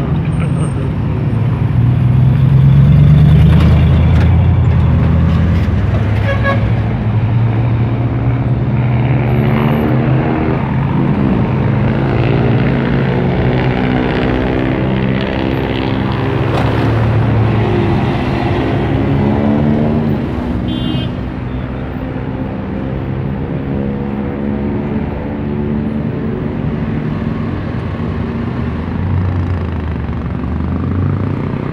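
Motor vehicle engines running in street traffic. An engine note rises in pitch through the middle, as a vehicle speeds up, then falls again about two-thirds of the way through.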